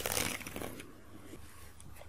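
Soft rustling from hands handling a crocheted piece and its yarn close to the microphone, with a small click at the start, fading out after about a second.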